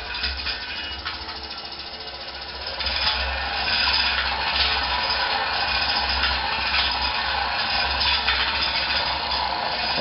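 Scraper agitator of a 50-litre Lee stainless kettle running, with a steady low hum and a continuous rattle from the drive and scraper blades. It gets louder about three seconds in as the agitator speed is turned up.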